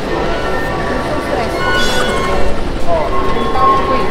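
Busy metro station concourse ambience: a steady din of machinery and crowd noise with scattered voices, broken by a few short tones.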